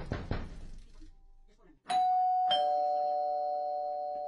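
A quick series of knocks on a door, then a two-tone ding-dong doorbell chime, the second note lower, both notes ringing on for about two seconds.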